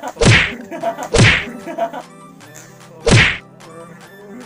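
Three loud, short smacking sounds, the first two about a second apart and the third two seconds later.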